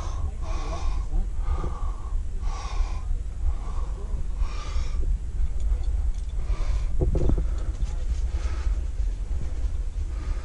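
A rock climber breathing hard, about one breath a second, over a steady low rumble.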